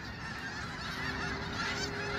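A large flock of snow geese calling in flight overhead: a steady, dense chorus of many overlapping honks with no single call standing out.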